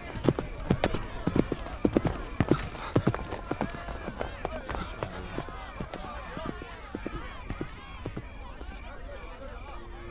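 A horse's hoofbeats clattering as it sets off and goes away, loud and rapid at first and fading over the next several seconds, with a murmur of voices underneath.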